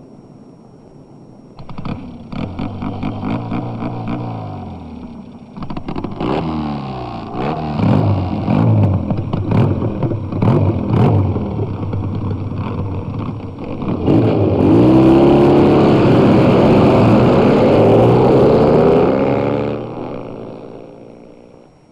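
Motorcycle engines revving up and down in repeated surges, with a popping, crackling clatter in the middle. From about fourteen seconds in several engines rev together, louder, then fade out at the end.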